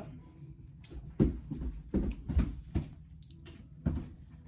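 Irregular soft clicks and knocks of wooden chopsticks and a plastic takeout sushi tray being handled as a piece of sushi is picked up, starting about a second in.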